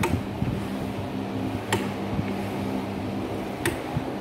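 Three sharp metal clacks, about two seconds apart, from the clamp carriage and lever of a homemade square-chisel mortiser being worked back and forth on its rails, over a steady low hum.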